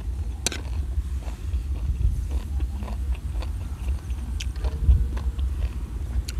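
Close-up chewing of a mouthful of spicy minced apple-snail salad, with many small crunchy clicks, over a steady low rumble.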